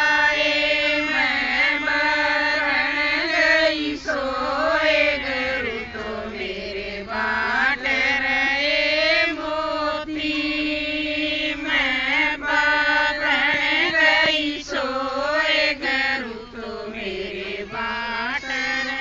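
Group of women singing a Haryanvi devotional guru bhajan in unison, with long held notes that slide up and down in a chant-like melody.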